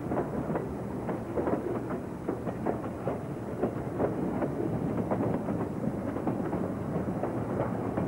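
Freight cars rolling past close by: steel wheels clicking and knocking over the rail joints several times a second over a steady rumble.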